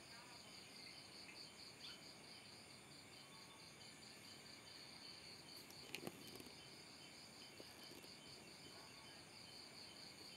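Faint cricket chirping in a steady, even pulsing rhythm, with a soft click about six seconds in.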